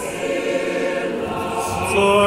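Group of voices singing an Orthodox hymn of glorification to the Mother of God in long held chords.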